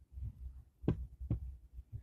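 Low steady hum, with two short clicks about a second in.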